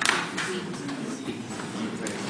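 Many students talking among themselves at once, a steady classroom chatter with no single voice standing out. A sharp tap sounds right at the start.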